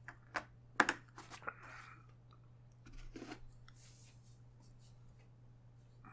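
A white bag being handled close to the microphone: a quick series of sharp crackles and clicks in the first two seconds, loudest just under a second in, then a softer rustle around three seconds, over a steady electrical hum.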